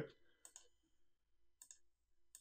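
Near silence with a few faint computer mouse clicks, one about half a second in and a couple close together near the end.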